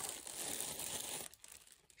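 Thin plastic packaging crinkling as a boxed doll is unwrapped by hand, for about a second and a half before it dies away.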